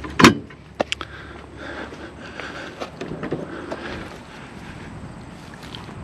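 A single loud knock about a quarter second in, then a lighter click, as a fifth-wheel trailer's magnet-held fold-out entry handrail is handled. After that only a low, steady outdoor noise.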